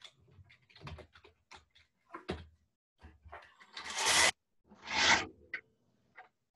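Scattered small clicks and rustles picked up by video-call microphones, with two louder hissing bursts about four and five seconds in.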